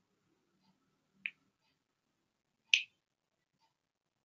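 Two short, sharp clicks about a second and a half apart, the second one louder.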